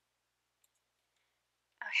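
Near silence, with a faint click about half a second in.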